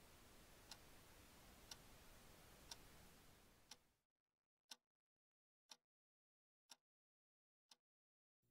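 Faint hiss of TV static with a wall clock ticking once a second through it; the static cuts off suddenly about four seconds in, leaving the clock ticking alone.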